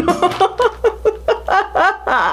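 A woman laughing in a quick run of short pulses, rising in pitch toward the end.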